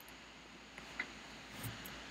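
Quiet room tone with three faint, short clicks from a computer being clicked through a menu.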